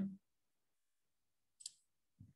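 Near silence, broken once, a little past the middle, by a single short, faint click.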